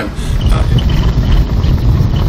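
Car driving over a cobblestone street, heard from inside the cabin: a steady low rumble of tyres on the cobbles.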